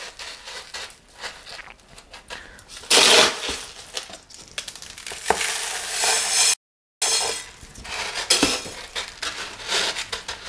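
Loose pumice potting media scooped and poured with a metal scoop, the grains rattling and clinking against the scoop and into the pot. The loudest pour comes about three seconds in, with a longer one around six seconds and scattered clicks of stones afterwards. All sound drops out briefly just before seven seconds.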